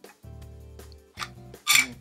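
Quiet background music with a brief scrape and then a short, louder plastic scrape near the end as the small trapdoor on the front of a plastic three-button garage door remote is pulled open.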